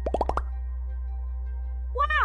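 A cartoon pop sound effect: a quick run of four or five short rising 'bloop' pops in the first half-second, the kind used for a character popping onto the screen. Soft background music with held chords follows.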